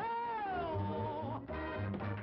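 A long, high wailing cry that starts suddenly, slides a little down in pitch and wavers before stopping after about a second and a half. It sits over 1930s cartoon band music with a steadily repeating bass.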